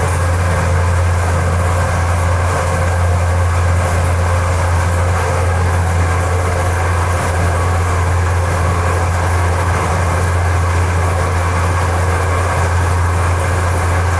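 Feed mixer running steadily with a loud low hum while it mixes a batch of pig feed.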